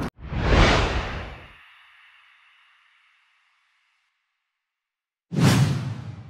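Whoosh sound effect of a video transition to an end card, swelling quickly and fading away over about two seconds. After a few seconds of silence, a second whoosh starts near the end.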